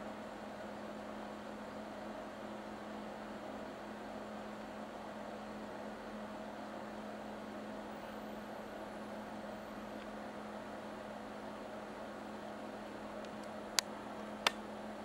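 Steady low hum at one pitch over an even hiss, with one sharp click near the end.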